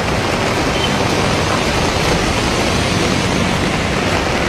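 Steady rushing noise of traffic driving through a flooded, rain-soaked road, with water spraying off the tyres.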